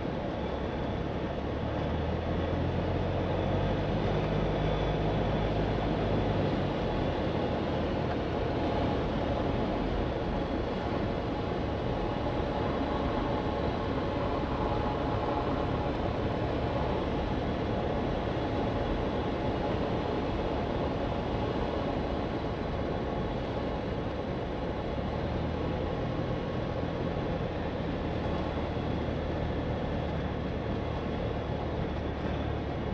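Cessna 172's four-cylinder piston engine and propeller droning steadily with air noise, heard inside the cabin on final approach. The low hum is stronger for a few seconds from about two seconds in, eases off, and grows again near the end.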